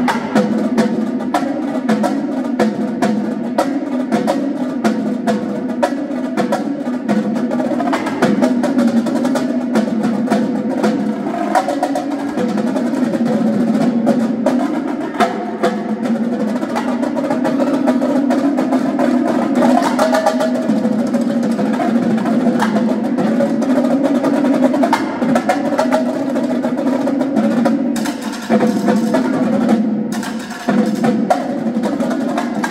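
Marching drumline playing: multi-tenor drums and bass drums in fast, continuous rapid strokes.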